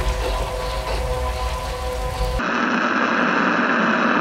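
Rain falling with a low rumble under faint steady musical tones. A little past halfway it cuts off suddenly, giving way to a steady, dense wash of noise from a duller-sounding recording.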